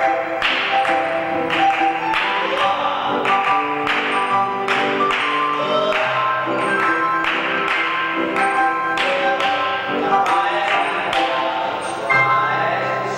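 Piano music accompanying ballet barre exercises: chords struck on a steady beat, about one and a half strikes a second, the notes ringing on between strikes.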